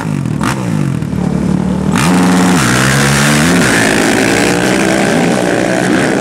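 Two sport ATVs revving at the start line, then launching at full throttle about two seconds in. The engine pitch climbs and drops back as they shift up, and the engines stay loud as they race away.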